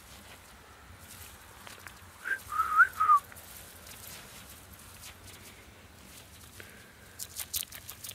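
A person whistling a short call of three or four quick, gliding notes about two to three seconds in, calling a rabbit over. A few soft crunches follow near the end.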